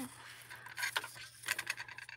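Thin metal cutting dies being handled and freed of washi tape on a die-cutting plate: a scatter of light clicks, clinks and rustles.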